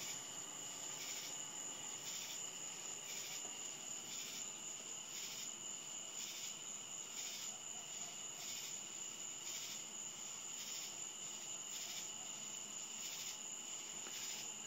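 Night insects chirping: a steady high trill with a pulse about twice a second.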